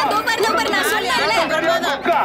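Several people's voices talking and calling out over one another, excited chatter.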